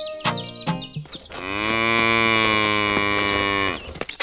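A cow mooing sound effect: one long moo of about two and a half seconds, starting just over a second in, over background music with plucked strings.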